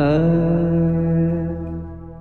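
A singer holding one long note over a steady drone, sliding up into it at the start and fading out in the second half, in a Kannada bhavageethe light-music song.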